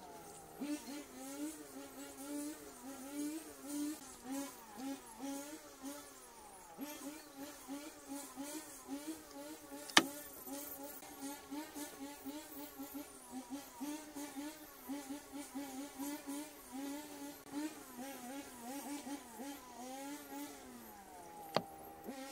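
A flying insect buzzing close by, its pitch wavering up and down throughout, with two sharp clicks: one about ten seconds in and one just before the end.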